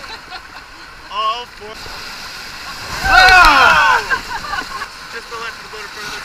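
Whitewater rapids rushing steadily under a raft. About a second in there is a short shout, and around three seconds in several voices yell together, the loudest moment.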